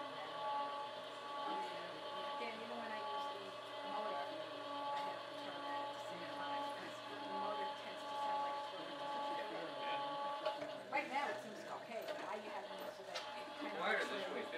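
Small electric motor of a motor-driven etching press running steadily with a whine as it drives the heavy press bed under the roller, then stopping about ten and a half seconds in. It is a small motor for what it is moving.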